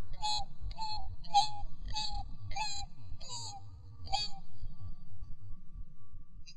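Homemade junk instrument, 'the rabbit's backbone', played in a run of about seven short squeaky notes, each dipping slightly in pitch, ending about four seconds in. A faint steady tone lingers after the last note.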